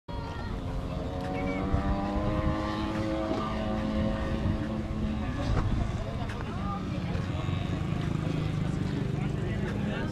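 Motorcycle engine running with a steady drone that rises slightly over the first few seconds and fades about halfway through, over a constant low rumble, with people talking.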